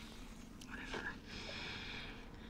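A faint, breathy, whisper-like voice barely above room tone.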